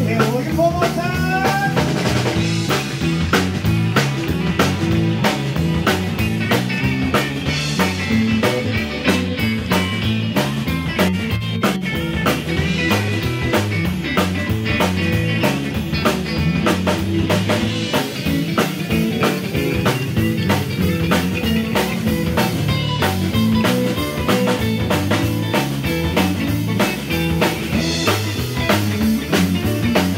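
Live band playing an instrumental break of a rockabilly blues number with no singing: drum kit keeping a steady beat under a five-string electric bass, keyboards and a lead line.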